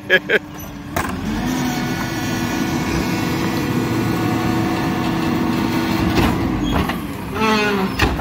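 Rear-loader garbage truck's engine and hydraulics under load while the rear cart tipper raises a trash bin. About a second in, the engine speeds up to a steady whining hum. It holds there, then drops away shortly before the end.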